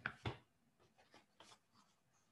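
Faint handling noise close to a computer microphone: two louder short rustles right at the start, then a few light clicks and rustles.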